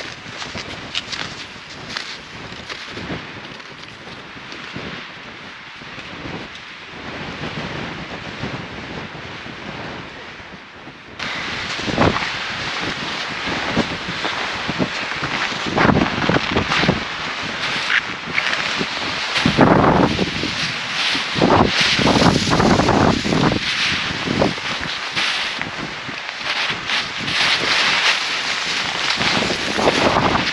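Wind buffeting the microphone over hikers' footsteps in snow. About 11 s in the sound jumps louder, with stronger wind and heavier steps sinking into deep snow.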